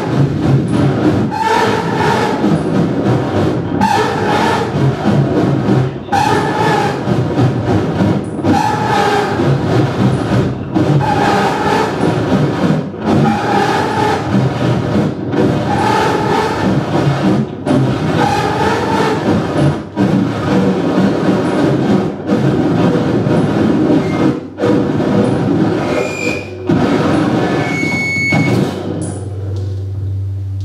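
Live experimental electronic music from laptops and synthesizers: a dense, rumbling noise texture with a tone that pulses back about every two seconds. Near the end the texture drops away to a brief high tone, then a low steady hum.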